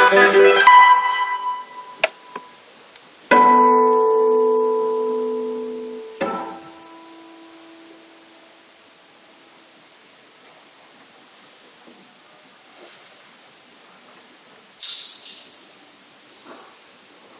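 Classical guitar ending a piece: a fast run of notes dies away and a sharp knock follows. A final chord rings out for about three seconds and is stopped with a click. After that only quiet room tone remains, with a short burst of noise near the end.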